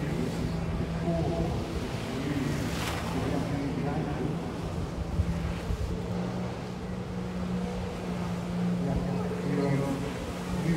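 Jet ski engine running steadily as it drives water up the hose to a flyboard rider, with a steady low drone and spray. Voices talk in the background, and there is one brief sharp click about three seconds in.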